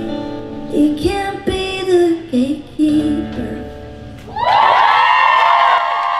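Female vocalist singing a pop song live through a microphone with band accompaniment including guitar. About four seconds in, the audience breaks into loud screaming and cheering that carries on.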